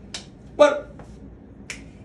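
Two sharp finger snaps, about a second and a half apart, with a short spoken word between them.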